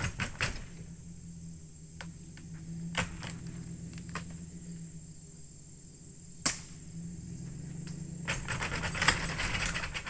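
A vehicle engine runs low and steady as it pulls on a chain hooked to a house wall. Over it come a few sharp cracks, the loudest about six and a half seconds in, and a rush of noise in the last two seconds.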